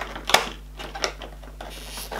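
Cardboard door flap of an advent calendar being pulled open: a sharp snap about a third of a second in, then a lighter click about a second in.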